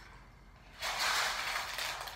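Rocks scraped and shuffled in a bowl as a handful is picked up: a rushing, scraping noise that starts about a second in and lasts about a second.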